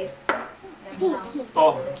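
Short snatches of voices, a young child's among them, with light clicks and taps between them.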